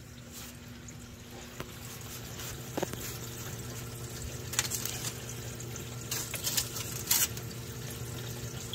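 Water running and splashing in a reef aquarium's refugium, over a steady low hum of equipment, with a few brief louder splashes in the second half.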